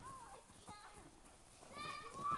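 Golden retriever puppy giving a few short, high-pitched arching whines or yips during rough play, faint at first, with a louder one near the end.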